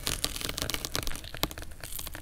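Crisp crunching and crackling of fresh fruit, a dense run of small sharp cracks.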